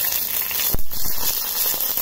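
Green chillies sizzling in hot oil in an enamel pan, a steady frying hiss, with one sharp knock a little under a second in.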